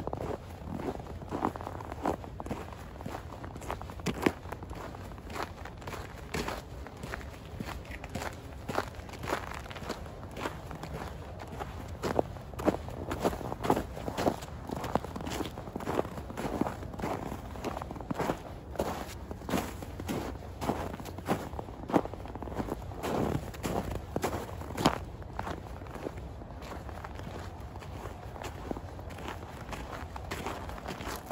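Footsteps crunching in snow at a quick, steady walking pace, each step a short crisp crunch. The steps get softer over the last few seconds.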